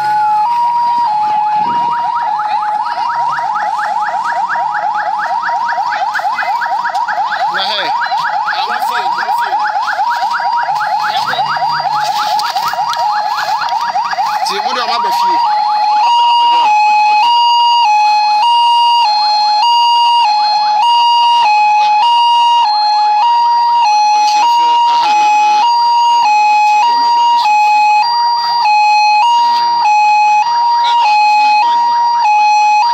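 Two-tone hi-lo vehicle siren switching steadily between two pitches about once a second, with a faster warbling siren sounding over it for the first half.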